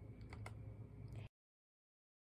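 Faint typing on a computer keyboard, a few scattered key clicks over a low hum, cutting off abruptly to dead silence a little past halfway.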